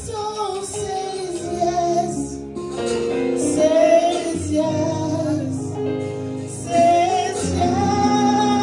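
A woman singing the lead of a slow gospel worship song into a handheld microphone, her voice gliding between long held notes over sustained instrumental accompaniment.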